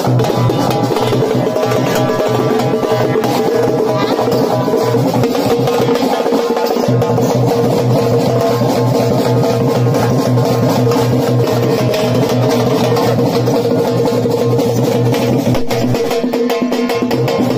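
Karakattam dance music: fast, continuous drumming on large stick-beaten drums over steady, sustained melodic tones.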